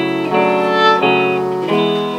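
Live band playing between sung lines of a slow song, led by electric guitar: a run of held notes, changing about three times.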